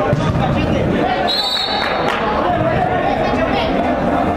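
Players and spectators shouting and talking in a reverberant indoor football hall, with the thuds of a ball being kicked and bouncing. There is a brief high steady tone about a second and a half in.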